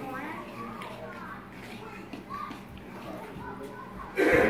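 Faint background chatter of children's voices.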